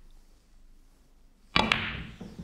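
Snooker cue tip striking the white cue ball with power and right-hand side: a sharp clack about one and a half seconds in, followed quickly by further clicks as the white catches the red too thin and the pot is missed.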